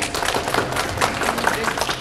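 Audience applauding with dense, irregular clapping at the end of a poetry reading.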